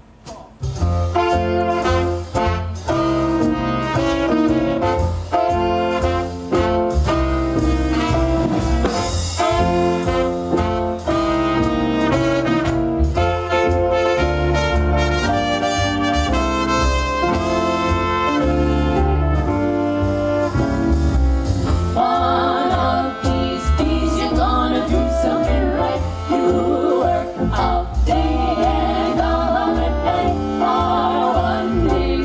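Live swing band starts up about half a second in, trumpet playing the lead over double bass and drums. Female close-harmony voices join in over the band for roughly the last third.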